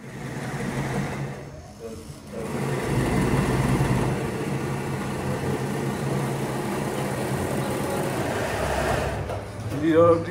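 Indistinct voices over a steady low hum, with no clear words, dipping briefly about two seconds in.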